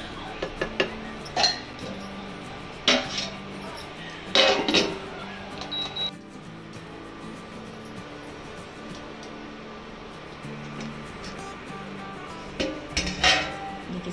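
A wooden spatula knocking against a nonstick kadai and a steel lid clinking onto the pan, over background music, with a short high beep from the induction cooktop about six seconds in. More clatter of pan and lid comes near the end.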